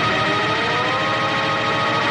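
Solo violin sliding slowly up in pitch on a long bowed note, over a held chord from the backing track.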